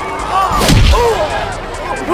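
A heavy punch sound effect from a film fight, a single hit with a deep boom about two-thirds of a second in, over a crowd shouting.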